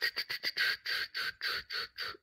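A person's breathy, unvoiced bursts, about four a second, each sounding alike, with no voiced words.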